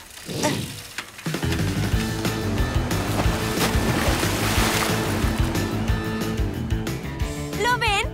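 Upbeat cartoon background music with a steady beat, starting about a second in. A rushing surf sound effect swells under it towards the middle and fades.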